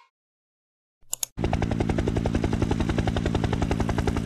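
Helicopter sound effect: rotor blades chopping in a fast, even beat over a steady engine drone. It starts about a second and a half in, after a short blip.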